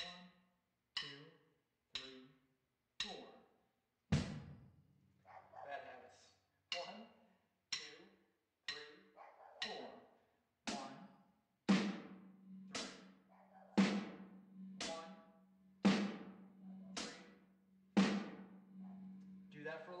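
Drum kit played with sticks, hands only: closed hi-hat and snare drum alternating slowly, about one stroke a second, in the basic beat with hi-hat on one and three and snare on two and four. The snare strokes are the louder ones and ring on briefly.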